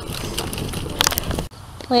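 Stroller wheels rolling on pavement, a steady rumble with small clicks and one sharper click about a second in, which cuts off suddenly partway through. A woman's voice begins near the end.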